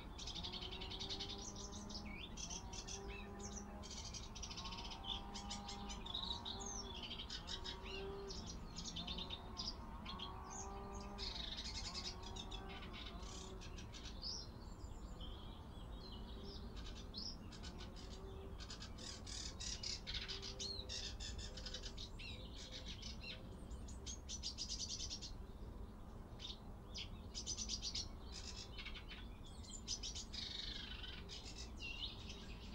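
A chorus of wild songbirds chirping and trilling throughout. A lower, repeated pitched sound runs underneath, mostly in the first half.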